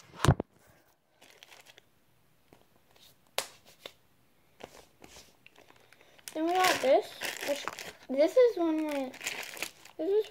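A handling bump on the camera at the very start, then soft scattered clicks and crinkles of hands handling things, and over the last few seconds a girl's voice rising and falling in pitch, with no clear words.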